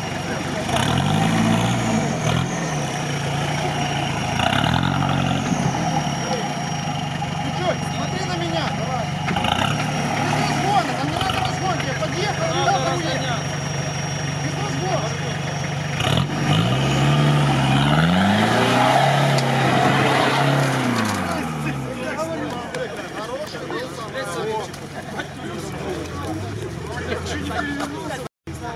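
A 4x4 off-road vehicle's engine revving up and back down several times under load in deep mud, holding a steady note between the revs. The longest and loudest rev is about two-thirds of the way in, and crowd voices run underneath.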